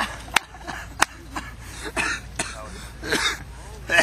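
Men laughing in short, breathy bursts, with two sharp clicks in the first second.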